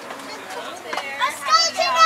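Children's high-pitched, excited voices, quiet at first and growing louder from about a second in.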